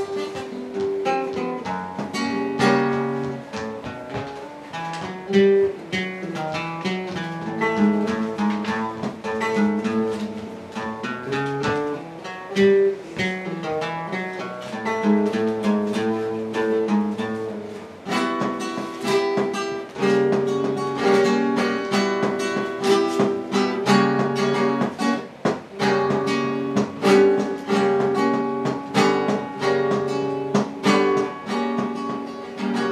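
Solo flamenco guitar playing a passage of picked melody notes broken by strummed chords. The strumming becomes fuller and more frequent about two-thirds of the way in.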